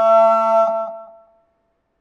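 A Buddhist monk's chanting voice holding one long note that fades out about a second in, followed by silence until the next chanted line.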